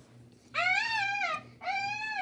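A young child making two drawn-out, high-pitched whining cries, each rising and then falling, like a whimpering pretend-animal voice in play.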